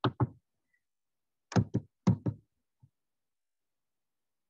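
A handful of sharp, close knocks and clicks from someone working the computer at the desk. There are two near the start, then four in quick succession about a second and a half in, and a faint one shortly after.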